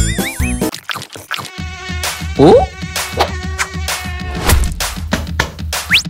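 A steady low buzz with repeated clicks over it, starting about one and a half seconds in.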